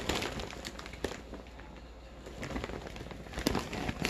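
A gift bag rustling and crinkling as it is handled, with scattered light crackles; it goes quieter for a moment midway.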